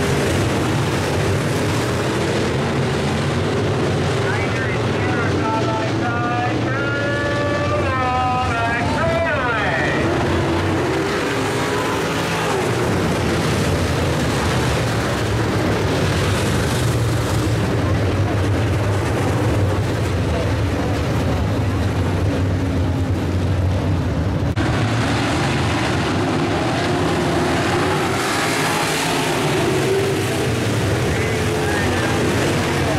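A field of IMCA Modified dirt-track race cars running at speed around the oval, their V8 engines making a loud, continuous blend. Individual engine notes rise and fall as cars accelerate off the turns and pass near the fence.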